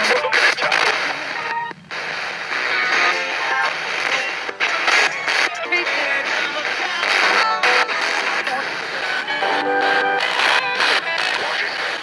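Spirit box sweeping rapidly through radio stations: choppy radio static broken every so often by short dropouts and snatches of music and voices.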